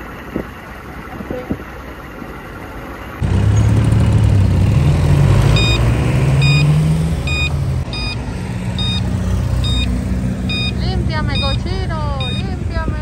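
Vehicle engine running in road traffic. For the first three seconds it sits under wind noise; then, after an abrupt jump to a much louder level, the engine pulls through rising and stepping pitches as it accelerates. From a little past halfway, a short high electronic chime repeats a bit faster than once a second.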